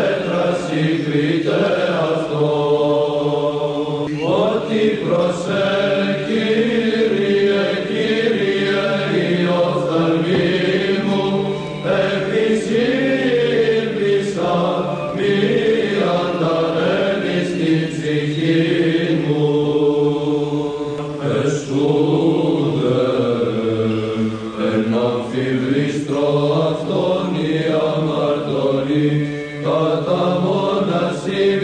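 Byzantine chant sung in Greek: a slow, ornamented melody over a steady held drone (ison).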